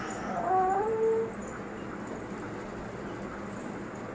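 A baby's brief whimpering cry that dies away after about a second, leaving only faint room noise.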